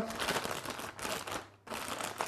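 Plastic wrapping crinkling as it is handled, an irregular crackle with a short break about one and a half seconds in.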